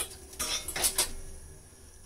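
A metal spoon clinking and scraping against steel cookware while ginger-garlic paste is spooned into a pressure cooker: a sharp clink at the start, then three or four short scrapes within the first second.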